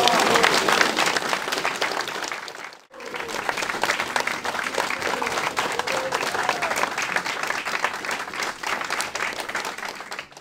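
A roomful of people clapping their hands in steady applause, with a few voices faintly under it. The clapping breaks off abruptly just before three seconds in and starts again at once.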